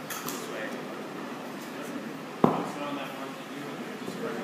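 Faint voices in a large hall, with one sharp thump on the exercise mat about two and a half seconds in as a student is taken down.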